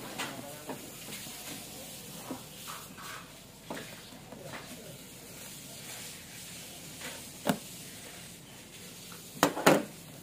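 Cardboard toy box being handled and turned over on a table: faint rubbing and scraping with scattered small taps, a sharp knock about seven and a half seconds in and two more close together near the end.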